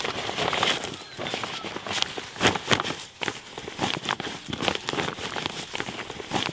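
Thin plastic sheeting crinkling and rustling in irregular crackles as a homemade plastic shelter on bamboo stakes is slid down over a tomato seedling, with straw mulch rustling under it.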